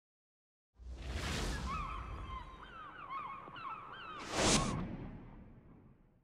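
Logo-intro whoosh sound effect: a noisy swell comes in about a second in, with short rising and falling pitched blips over it. A second, brighter whoosh follows a little past four seconds, then the sound fades out.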